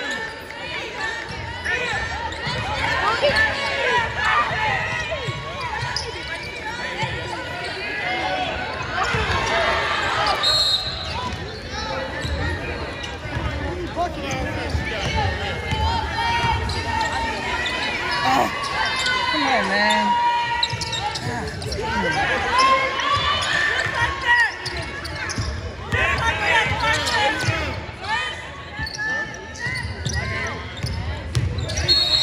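Basketball game sounds in a large gym: a ball bouncing on the hardwood court, sneakers squeaking, and players' voices calling out on court.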